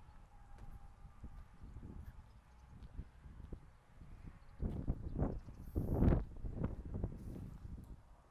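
Footsteps on a concrete floor: a few walking steps about half a second apart in the second half, the loudest just after the middle.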